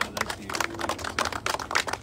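A small group of people applauding: steady, dense hand claps.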